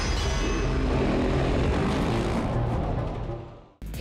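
Short music sting for a section transition, blended with a vehicle-like sound effect; it starts suddenly, holds, and fades out about three and a half seconds in.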